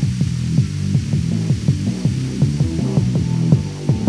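Background music: a low, pulsing bass line of quick repeated notes.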